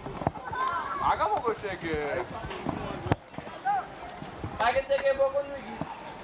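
Voices talking in short bursts, with one voice drawn out on a single held pitch about five seconds in; two sharp clicks fall between them.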